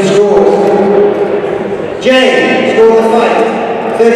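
A male ring announcer's voice over a hall PA, drawing words out in long, held, sing-song calls: one through the first half, then a second that starts with a rise in pitch about two seconds in.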